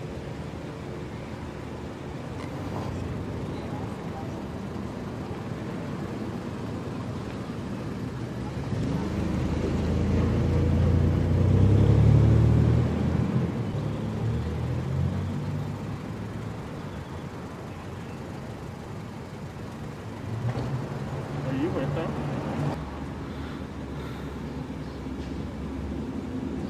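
Street traffic noise, with a vehicle passing close that builds to a loud low rumble around the middle and then fades; a smaller swell of engine rumble follows a few seconds before the end.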